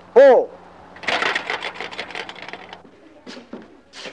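A short shouted call just after the start, then about two seconds of fast rattling clatter, and a few separate knocks near the end.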